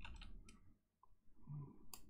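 Faint clicks of computer input as a typed figure is entered: a few light clicks near the start and a sharper one near the end.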